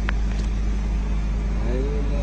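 Steady low rumble of a car engine running, with a short click just after the start and a man's voice beginning near the end.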